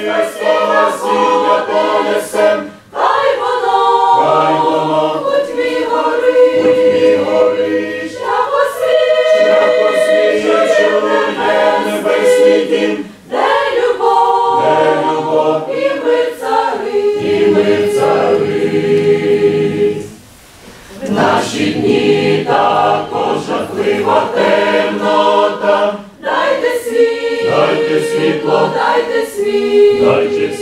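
Mixed church choir of women's and men's voices singing a hymn in parts. The singing comes in phrases separated by short breaths, with one longer pause about two-thirds of the way through.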